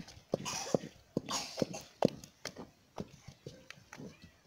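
A wooden stirring stick turning thick tuwon masara (maize-flour swallow) in a metal pot: about a dozen short, irregular knocks against the pot, with soft scraping between them.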